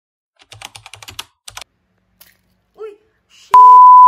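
Keyboard-typing sound effect: a quick run of clicks for about a second, then a short chirp and, about three and a half seconds in, a very loud, steady, high single-pitch beep.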